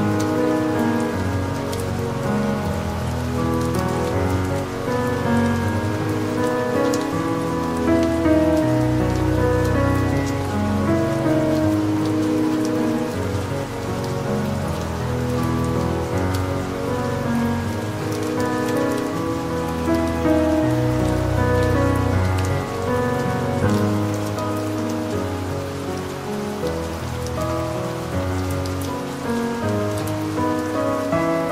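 Calm piano music, slow sustained notes and chords, over a steady sound of soft rain.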